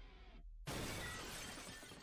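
Glass shattering as a sound effect in the anime's soundtrack: a brief hush, then a sudden crash about two-thirds of a second in that trails away slowly.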